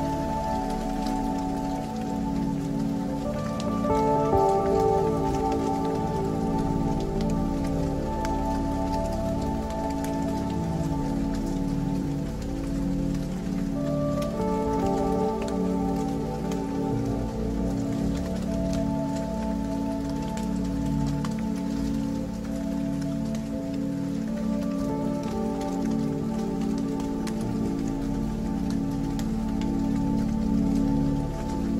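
Ambient electronic music: sustained drone chords that shift about four seconds and fourteen seconds in, over a steadily pulsing low note, with a crackling rain-like texture throughout.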